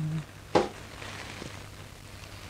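One short sniff through the nose at a perfume-sprayed tissue about half a second in, over a faint steady low hum.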